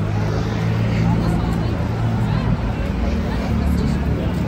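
Steady low hum of a motor vehicle engine running nearby, with people talking in the background.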